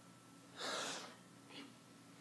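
A man taking one deep breath, about half a second in and lasting about half a second, followed by a faint short breath sound.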